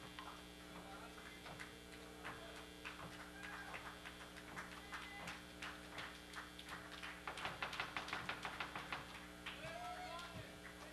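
Audience clapping between songs: scattered claps that thicken into a burst of fast, dense clapping about seven seconds in, with a brief shout near the end, over a steady electrical hum.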